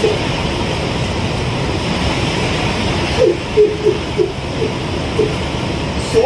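Steady rushing background noise, with faint, short voice-like sounds from about three seconds in.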